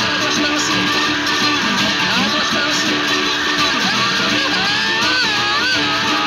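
Acoustic guitar playing blues, plucked and strummed, with notes that glide up and down in pitch about two seconds in and again near the end.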